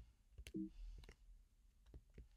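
Near silence with a few faint, scattered clicks, and a short low two-note blip about half a second in.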